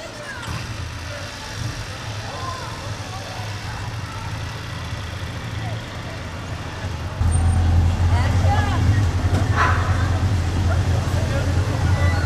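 A vehicle engine running with a steady low hum, which jumps louder about seven seconds in; faint voices talk over it.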